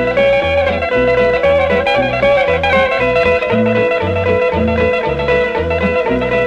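Instrumental break of a 1950s rockabilly record: guitar holding a long lead note over a steady bass beat of about two notes a second, no vocals.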